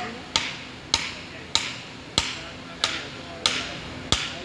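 Hand-tool blows struck at the base of a pine tree being felled: six sharp, evenly paced strikes, about one and a half a second, each with a brief ringing tail.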